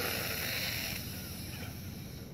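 A woman's deep inhale through the nose, a breathy hiss that starts strongly and fades away over about a second and a half.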